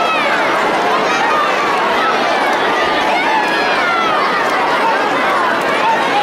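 Hubbub of many young children's voices chattering at once, a steady crowd of overlapping high voices with no single speaker standing out.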